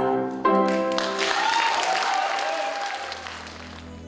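The final held notes of a male and female vocal duet with accompaniment, ending about a second in, followed by audience applause that gradually fades.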